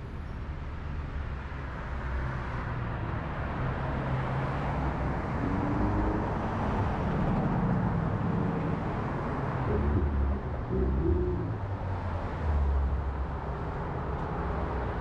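Road traffic on a busy highway: cars passing, heard as a steady rushing noise with a low rumble that swells around the middle. A few short low tones come through about halfway and again near the end.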